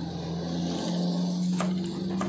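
A motor vehicle's engine running close by, its pitch climbing slowly as it grows louder, with a couple of sharp taps of a knife on the wooden chopping block in the second half.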